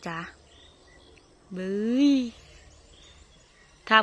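A woman's drawn-out exclamation, rising and then falling in pitch, about one and a half seconds in. Around it there is quiet outdoor ambience with faint bird calls.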